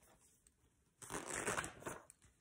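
Paper rustle of a picture book's pages being handled and turned, lasting just under a second from about halfway in.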